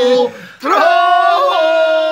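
Unaccompanied men's voices singing a traditional rural Balkan folk song in long held notes. The singing breaks off briefly near the start, then comes back in with a sharp upward swoop into a new held note.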